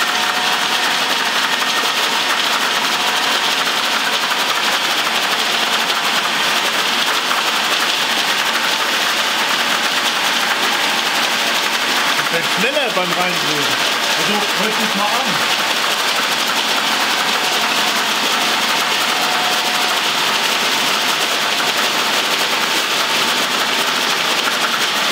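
Old three-phase electric machine with a gearbox running with a loud, steady whir, its speed adjuster being turned by hand while it runs.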